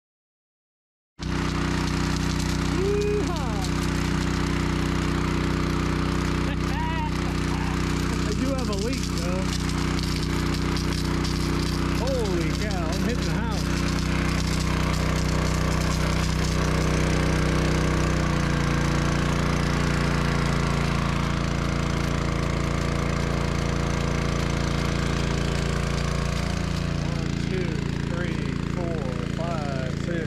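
Engine-driven two-inch high-pressure water pump running steadily at speed, feeding a big field sprinkler; it cuts in abruptly about a second in. About 18 seconds in, its engine note shifts to a slightly different pitch.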